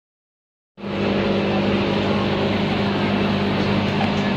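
Steady electric hum and hiss of aquarium air pumps and filters, starting abruptly about three-quarters of a second in and running on without change.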